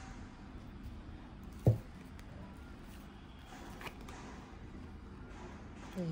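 Tarot cards being handled: a deck shuffled and spread, with a card drawn and laid down, soft rustling and faint card clicks. One sharp, dull thump about a second and a half in.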